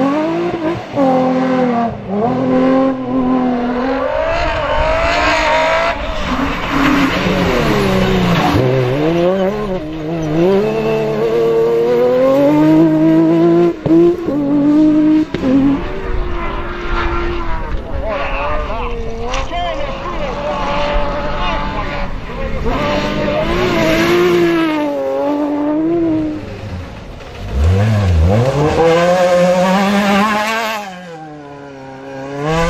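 Rally cars driven flat out on a loose dirt and gravel stage, one after another, engines revving up and dropping back through the gears again and again. Tyres spin and slide on the loose surface, throwing soil and gravel. Near the end a fresh car arrives with a low engine note rising in pitch.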